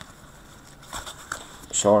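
Hockey trading cards being flipped through in the hand: soft sliding of card stock with a few light clicks, one at the very start and a couple about a second in.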